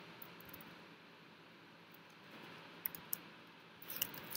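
Computer keyboard keys clicking: a few scattered keystrokes over a faint steady hiss.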